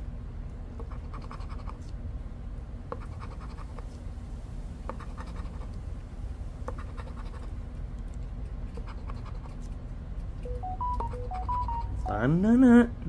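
A coin scratching the coating off a paper lottery scratch-off ticket in short, repeated strokes, uncovering the number spots one by one.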